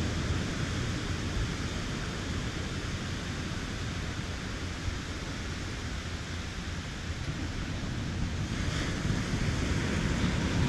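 Steady wash of ocean surf with wind buffeting the microphone. Near the end a car approaches along the road and its tyre and engine noise grows louder.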